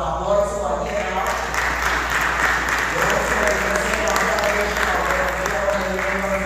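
Congregation clapping, the applause swelling about a second in and carrying on steadily, with a man's voice speaking over it.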